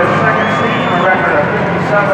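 Indistinct voices in a large, crowded gym arena, with no clear words.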